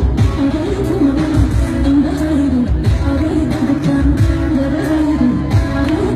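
A Somali pop song: a lead voice singing a winding melody over a band with a steady drum beat and heavy bass.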